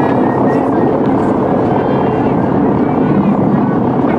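A motor ship's engine running steadily on deck, a continuous low rumble under a dense wash of noise, with passengers' voices faint in the background.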